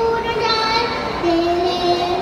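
A young boy singing into a microphone, holding long sustained notes. The pitch steps down to a lower note a little over a second in.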